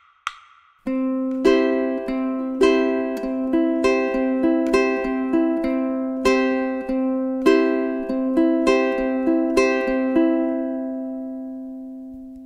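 Ukulele in GCEA tuning plucked over a held C chord, after a single click near the start: single open-string notes on the beats alternate with louder, fuller chords accented on the weak beats, a syncopated rhythm. The last chord rings out and fades over the final two seconds.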